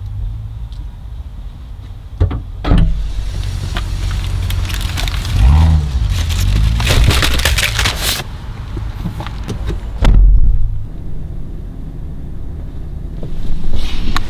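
Groceries being loaded into a vehicle's rear cargo area: plastic-wrapped packs of bottled water and bags rustle and crinkle as they are handled and set down, over a low outdoor rumble. There are a few sharp clicks early on and a loud low thump about ten seconds in.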